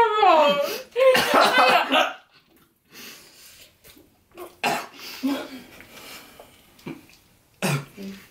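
Young people's voices laughing, groaning and coughing with their mouths full as they chew food they find revolting. A falling groan opens it, a loud burst follows about a second in, then short coughs and noises.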